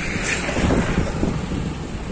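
Wind buffeting the microphone: a low, uneven rush of noise.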